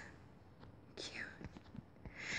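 Near silence with a faint whisper about a second in, along with a few soft mouth clicks.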